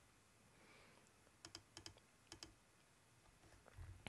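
Near silence broken by three quick pairs of faint computer mouse clicks, about a second and a half to two and a half seconds in.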